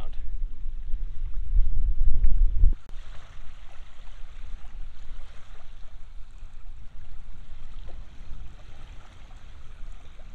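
Wind buffeting the microphone for about the first three seconds, then cutting out. After that comes a steady soft hiss of small waves lapping on the sandy shore of a lake.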